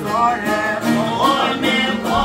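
Albanian folk song: a man's voice singing over plucked long-necked lutes (sharki and çifteli), strummed at about four strokes a second.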